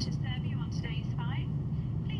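Steady low drone of an airliner cabin in flight, with quick gurgling glugs as wine pours from a can into a plastic cup.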